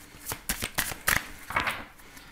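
A deck of oracle cards being shuffled by hand, giving a run of quick, irregular card clicks.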